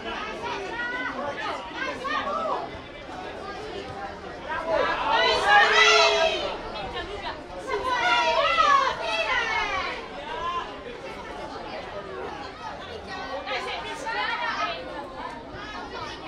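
Several voices shouting and calling over one another, with the loudest, high-pitched shouts about five seconds in and again about eight seconds in as play reaches the goalmouth.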